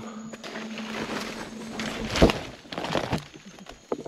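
Leaves and undergrowth rustling under footsteps as a person slips and falls on a jungle trail, with a loud thump about halfway through and a smaller one near the end.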